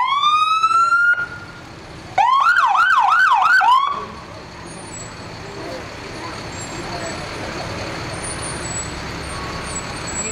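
A fire engine's electronic siren gives one short rising whoop, then after a pause a rapid up-and-down yelp of about five sweeps. After that only the truck's engine and a steady hiss go on.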